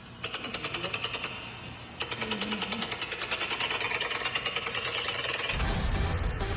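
Electronic sound effect of an animated outro: a rapid, even run of crackling pulses that gets louder about two seconds in. A deep bass comes in near the end as electronic music starts.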